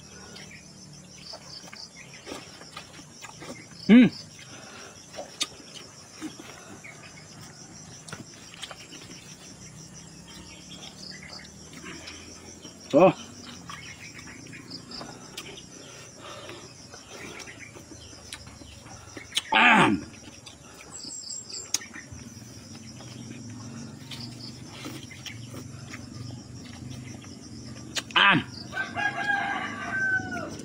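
Insects chirring steadily throughout, with four short loud calls cutting in. The longest call comes about two-thirds of the way in and falls in pitch.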